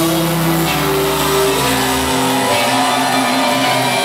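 Live rock band playing sustained, droning guitar chords over held notes. The low bass note drops out about two seconds in.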